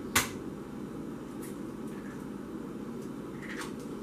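A single sharp tap just after the start, an egg being cracked against a hard edge, then only steady low room noise in the kitchen.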